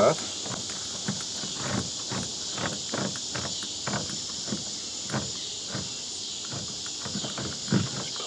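Steady high-pitched chorus of crickets, with irregular light clicks and knocks as a hot glue gun is worked against a plastic tote.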